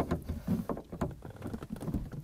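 A pry bar levering up the rear roof locking linkage of a Volkswagen Eos hardtop: irregular creaks and knocks, with a sharp click about a second in, as the latch is forced over its dead spot.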